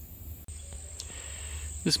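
Insects chirring in a steady high-pitched drone that starts about half a second in, over a low rumble on the microphone.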